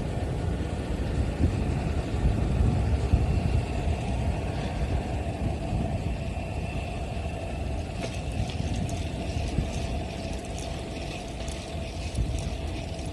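Steady low rumble of wind and road noise on the microphone of a city bicycle being ridden, with light irregular ticking from about eight seconds in.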